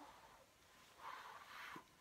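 A faint puff of breath blown into faux-fur jacket trim, a soft hiss about a second in lasting under a second.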